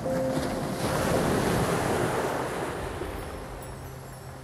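A sea wave surging in and washing up the shore: a rush of surf that rises suddenly at the start, is loudest about one to two and a half seconds in, then fades away.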